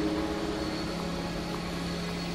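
A steady low hum over an even hiss, with a thin faint high tone running through it.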